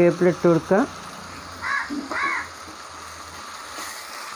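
A voice speaks for about the first second, then two short caw-like calls come about two seconds in, over a faint steady sizzle of koorka stir-frying in the pan.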